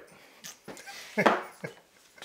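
A man's short wordless vocal reaction: a brief pitched sound sliding down, just over a second in, with a few softer voice sounds around it.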